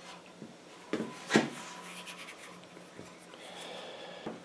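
Stiff steel sign-stake wire being wound by hand around a metal rod, rubbing and scraping on it, with two sharp clicks about a second in as the wire snaps against the rod.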